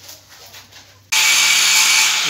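Faint room sound, then about a second in a loud, steady hiss starts abruptly and holds.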